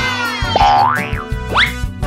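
Background music with two rising cartoon 'boing' sound effects, one about half a second in and a shorter one about a second and a half in, matching spring-mounted emoji bobblehead toys being set bobbing.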